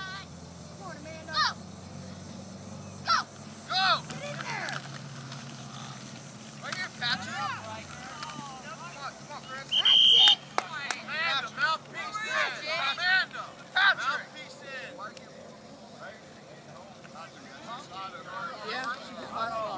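Young football players shouting and calling out in short bursts during a practice play. A whistle is blown once, briefly, about ten seconds in, as the play is stopped after a tackle. The whistle is the loudest sound.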